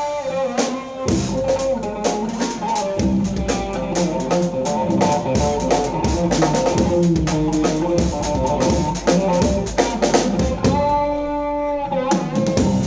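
Electric guitar and drum kit playing a funky, fiery fusion improvisation built on raag Adana in a 12-beat taal, with dense drum and cymbal strokes under held guitar notes.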